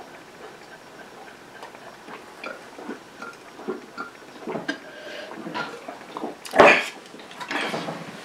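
Two people chugging beer from glasses: quiet gulping and swallowing with small clinks and knocks of glass. A sudden loud sound comes about six and a half seconds in, as one of them finishes.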